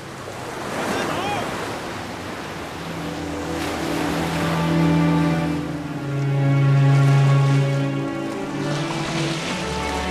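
Surf breaking and rushing over rocks, with dramatic background music of long held notes swelling in about three seconds in and growing louder.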